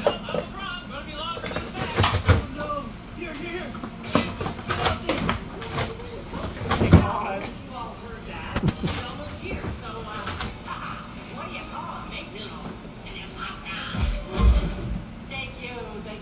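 A dog tearing and nosing at a cardboard shipping box: cardboard scraping, rustling and ripping, with a few dull thumps as the box is knocked, the loudest about seven seconds in. A television plays voices and music underneath.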